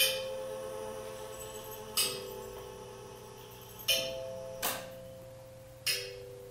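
Slow music of bell-like struck tones, five strikes about two seconds apart or less. Each rings on as a held note, and the pitch changes from strike to strike.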